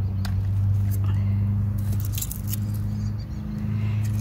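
Hand pruners snipping a raspberry cane: a few sharp clicks with leaves rustling, over a steady low motor hum in the background.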